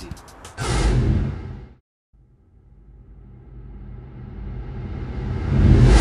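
Whoosh transition sound effects: one surge about half a second in that fades away, then a long swell that builds steadily louder over about four seconds and cuts off suddenly at the end.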